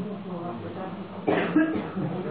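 Low voices in the room, with a sudden cough about a second and a half in.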